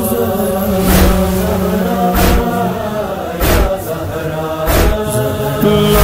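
Intro of an Urdu noha: a chorus of voices chants and hums long held notes over a slow, heavy beat, with a thud about every 1.3 seconds.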